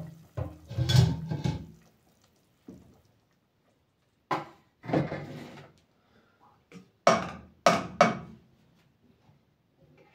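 Kitchen cookware and a serving utensil knocking and clattering as food is dished out: several separate sharp raps, with three close together about seven to eight seconds in.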